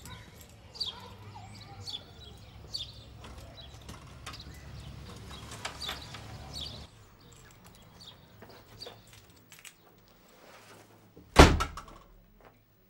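A door shut with one loud thud near the end, after several seconds of faint outdoor birdsong.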